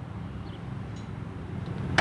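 Minivan power liftgate finishing its close: a steady low hum that grows slightly, ending in one sharp click as it latches.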